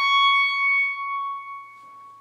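Solo clarinet holding a long high note at the top of a rising run, then letting it fade away over the second half.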